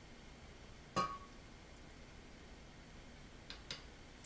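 A metal spoon clinks once against the blender jar about a second in, with a short ring, followed by two faint light clicks near the end over quiet room tone.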